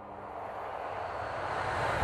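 A rushing whoosh sound effect swells steadily louder and cuts off suddenly at the end, a transition riser leading into a cut between scenes.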